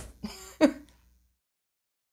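A woman's short vocal noise a little over half a second in, then the sound cuts to dead silence.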